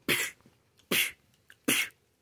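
Three short, breathy bursts from a man's mouth and throat, evenly spaced under a second apart, with no spoken words.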